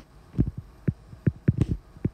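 Calculator keys being pressed in quick succession: about seven dull taps in two seconds at an uneven pace, as the daily-compounding figure is entered.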